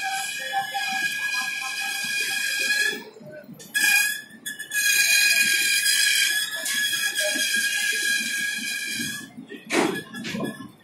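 Passenger train coaches rolling slowly past, with a steady high-pitched squeal from the wheels that breaks off about three seconds in and again near the end, and a short loud knock just before the end.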